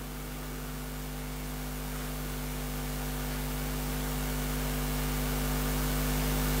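Steady electrical mains hum with several buzzing overtones over a background hiss, slowly growing louder through the pause.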